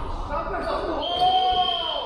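Youth basketball game in an echoing gym: players' voices shouting over the play under the basket, with a steady high-pitched tone coming in about halfway through and holding.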